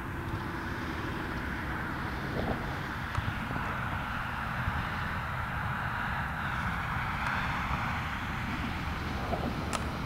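A steady, distant engine drone with a low rumble underneath, swelling slightly in the middle and then easing off.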